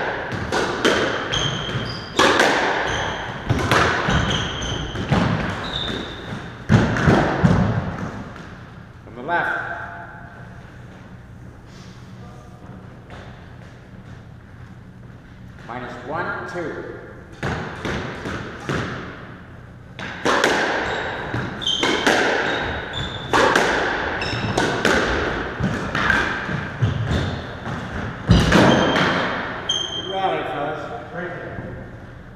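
Squash rallies: the ball repeatedly struck by rackets and smacking off the walls and floor, each hit ringing in the court's echo. The hits stop for several seconds in the middle, then a new rally starts.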